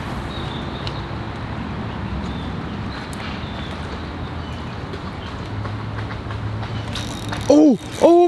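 Spinning fishing reel being cranked, a steady mechanical whir with faint clicking, followed near the end by a man's excited shout.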